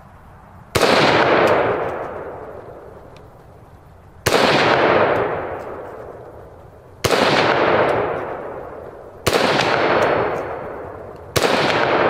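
Five shots from a Ruger SFAR semi-automatic rifle in .308 with a muzzle brake, fired slowly about two to three and a half seconds apart. Each shot rings out in a long echo that dies away over a couple of seconds.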